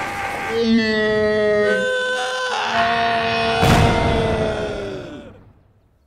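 An animated character's voice giving a long, drawn-out cry on two held notes, with a thump partway through. The cry fades out near the end.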